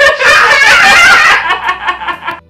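A toddler laughing loudly in a high-pitched voice, a long giggling squeal that breaks into quicker, weaker bursts of laughter near the end.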